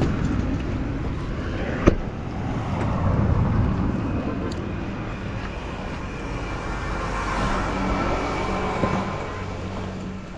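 Road traffic noise, swelling and fading as vehicles pass, with a single sharp knock about two seconds in.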